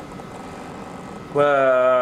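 Speech only: a pause with faint steady background noise, then, about two-thirds of the way in, a man's voice holds a long, level "và" ("and") at one pitch.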